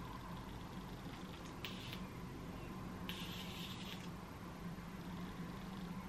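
USB rechargeable electric arc candle lighter firing at a tealight wick: two short, faint, high buzzes, the second longer, about a second and a half apart, over a low steady hum.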